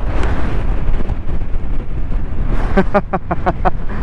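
A person laughing in a quick run of short bursts near the end, over a steady low rumble.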